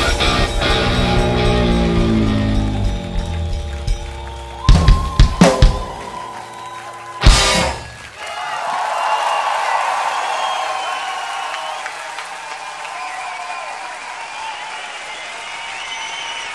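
Live rock band on electric guitars and drum kit playing the end of a song: a descending run, a handful of loud stop hits over a held chord, and one final hit about seven seconds in. A crowd then cheers and applauds.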